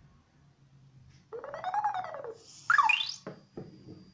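Electronic sound effects from a tablet's speaker running a LEGO WeDo 2.0 program. A tone that rises and falls in pitch lasts about a second, then comes a quick rising chirp, the loudest sound, near the end.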